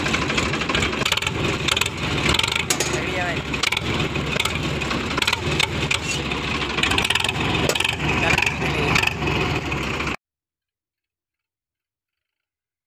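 Sonalika diesel tractor engine running with its exhaust silencer removed, open-pipe exhaust loud and rapidly pulsing. The sound cuts off abruptly about ten seconds in.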